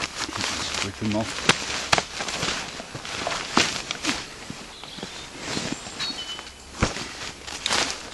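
Rustling and crackling of a waterproof backpack rain cover and pack being handled and pulled about at close range, with many sharp crinkles and scuffs.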